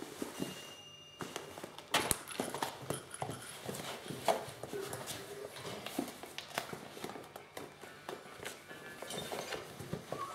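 Kittens scuffling and wrestling on a laminate floor and against a fabric play tunnel: irregular taps, thumps and rustles of paws and bodies. There is a sharp knock about two seconds in and another just after four seconds.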